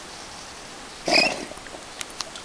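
Newfoundland dog swimming and blowing out one loud, short breath through its nose and mouth about a second in, the kind of snort a swimming dog makes to keep water out.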